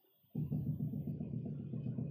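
A man's low, steady hum, starting about a third of a second in and held to the end.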